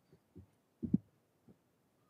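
A few soft, low thumps picked up by the meeting-room microphones, four or five in all, the loudest about a second in.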